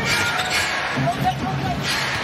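A basketball being dribbled on a hardwood court under steady arena crowd noise.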